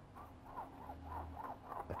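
Faint squeaks of a brush's wooden handle end scraping across a painted canvas in quick horizontal strokes. Each squeak rises and falls in pitch, about four a second.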